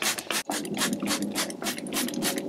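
Hand trigger spray bottle squirting diluted degreaser onto a bike chain and drivetrain in quick repeated hisses, about six or seven a second.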